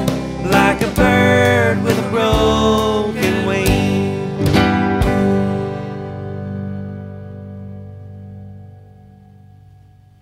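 Closing bars of a folk-country song: acoustic guitar strummed under a held melody line, ending on a final strum about five seconds in that rings out and fades away.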